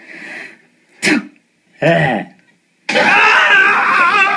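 A person coughing: two short, harsh coughs about a second apart. About three seconds in, a loud, drawn-out vocal sound with a wavering pitch begins.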